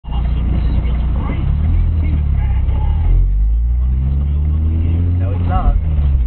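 Car engine and low road rumble heard from inside the cabin, the engine note rising from about halfway through as the car pulls away from a stop. Faint voices are heard at moments.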